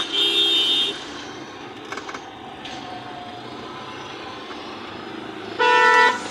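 Vehicle horns honking in street traffic: one steady blast lasting about the first second, and a second, differently pitched horn near the end. In between is the steady hum of a car driving, heard from inside its cabin.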